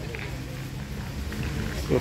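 Faint background chatter of people talking over a low rumble, with a few faint ticks. A man's voice comes in close-up near the end.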